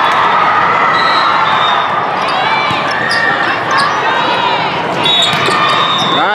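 Volleyball hall din: many overlapping voices, with scattered ball hits and a few short high squeaks about two to three seconds in.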